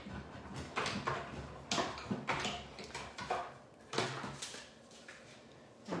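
Die-cutting machine running a small octagon die and cardstock through its rollers: a series of irregular knocks and rubbing sounds for about four seconds, then quieter.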